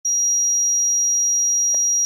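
A loud, steady, high-pitched electronic sine tone that starts abruptly and holds one pitch, with a brief faint knock near the end.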